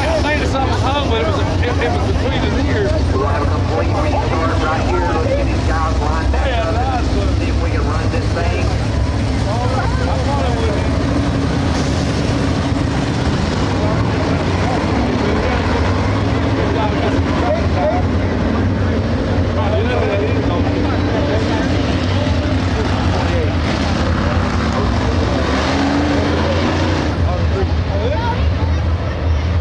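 A pack of dirt late models running their 602 crate V8 engines at slow pace under caution, a steady deep engine rumble as the field lines up double file, with people's voices over it.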